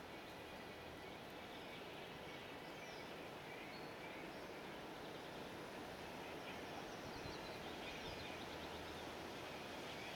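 Faint, steady outdoor background noise, with a few distant bird chirps now and then.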